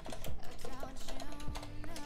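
Computer keyboard being typed on, an uneven run of key clicks, over quiet background music.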